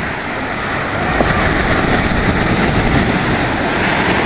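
Dense splashing and churning of shallow water as a mass of netted fish thrashes in a beach seine, with a heavier low rumble joining about a second in.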